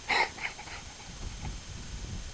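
Rhodesian Ridgeback letting out a short, high-pitched whine at the start, followed by a couple of fainter ones: the dog is worked up over a rabbit it has been led to believe is in an old irrigation pipe.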